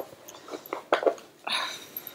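Small items being handled and rummaged in a make-up pouch: a few soft clicks and knocks, then a short rustle about one and a half seconds in.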